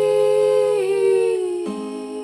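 A long held vocal note over a ringing acoustic guitar chord; the note dips slightly about halfway through, and near the end the guitar moves to a new, lower chord as the sound begins to fade.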